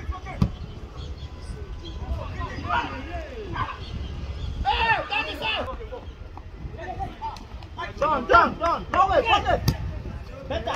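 Voices of football players and onlookers shouting and calling out, loudest in a burst about five seconds in and again from about eight seconds to near the end, over a steady low rumble.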